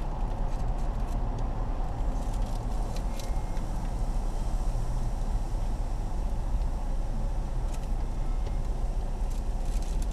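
Car engine idling, heard from inside the cabin as a steady low hum, with a few faint clicks.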